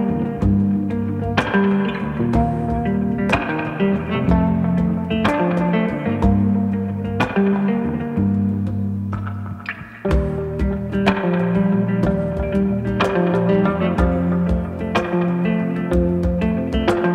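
Instrumental music: two hollow-body electric guitars play a slow, reverberant melody over picked chords, while congas are played by hand. There is a brief lull a little before halfway, then a strong new phrase comes in.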